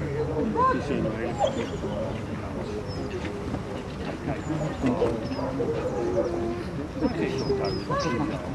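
A German shepherd-type dog whining in short rising and falling notes, under a low murmur of voices, with birds chirping now and then.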